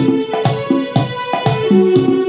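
Casio electronic keyboard being played: a melody of sustained notes over a steady, repeating rhythmic pattern of low notes and beats.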